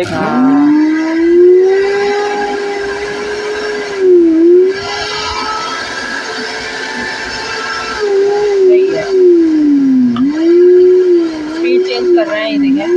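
Silver Crest commercial blender's motor base running with no jar fitted. Its whine rises in pitch as it spins up just after switch-on, then holds steady. The pitch dips and recovers a few times, mostly in the second half.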